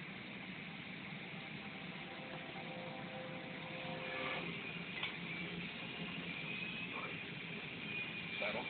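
Steady low hum and hiss of weight-room background noise, with a faint drawn-out voice from about two and a half to four and a half seconds in and a couple of faint clicks after it.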